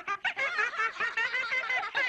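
Several cartoon children's voices laughing together in quick, high chuckles, jeering at someone.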